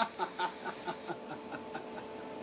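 A man laughing in short, fading bursts over the hiss of a sparkler burning in a welder's electrode holder, the hiss dying away about a second in. A faint steady hum runs underneath.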